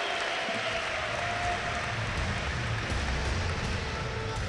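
Crowd applauding, a steady even wash of noise, with a low rumble underneath from about halfway through.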